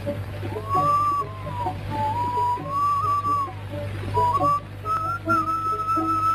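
Film soundtrack music: a slow melody in long, gently gliding high notes on a single pure-toned voice, like a flute or whistled tune, over a steady low hum from the old soundtrack.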